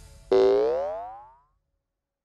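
Cartoon boing sound effect: a single springy tone that rises in pitch and fades away over about a second.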